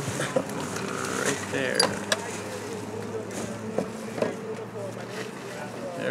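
Indistinct voices over a steady low hum of an idling vehicle engine, with a few sharp knocks and clatters scattered through.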